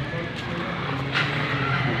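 A vehicle engine running steadily with a low, even hum.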